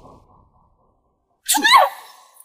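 A woman's short, sharp cry near the end, rising in pitch, as she is shoved to the ground.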